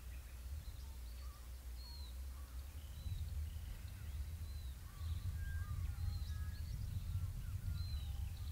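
Wind on the microphone, a low uneven rumble that gets a little louder about three seconds in, with faint scattered bird chirps and short whistled notes throughout.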